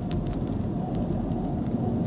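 Steady low rumble of a moving car's road and engine noise heard inside the cabin.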